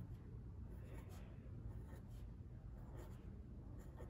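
Sharpie felt-tip marker dabbing dots onto a sheet of paper on a wooden desk: a series of faint, short taps, about six of them.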